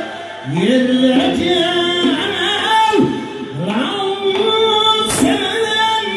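Man singing a Khorezm folk song with ornamented, sliding notes, twice rising in a long slide into a held note, over a small band of long-necked plucked lute, frame drum and accordion. A sharp drum hit comes about five seconds in.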